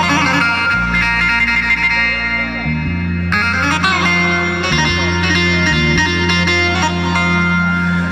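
Korg Pa800 arranger keyboard playing an instrumental passage of a Turkish dance tune: a quick lead melody over held bass notes and accompaniment.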